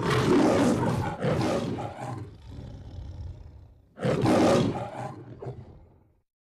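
The Metro-Goldwyn-Mayer logo's lion roar: two loud roars in quick succession, a quieter stretch, then a third loud roar about four seconds in that fades away.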